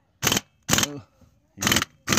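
Pneumatic tool driving a socket on a bottle jack's screw, run in several short bursts of the trigger with brief silences between. It is turning the screw the wrong way.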